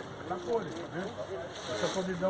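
Quiet speech: voices talking in the background, softer than the main speaker.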